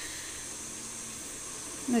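A steady high-pitched hiss with a faint low hum under it, in a pause between words.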